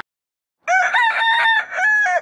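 A high, pitched call dropped in after a cut to total silence: one flat note held about a second, then a shorter one.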